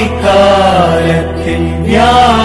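Devotional singing: a voice holds long, slowly wavering notes over a steady low instrumental drone, breaking briefly before a new phrase near the end.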